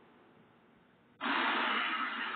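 Near silence for about a second, then a steady hiss of background noise cuts in suddenly and holds.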